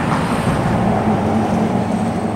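A car driving over the bridge close by: steady, loud tyre and engine noise.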